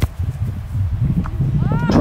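Wind rumbling on the microphone outdoors. Near the end comes a brief call that rises and falls in pitch.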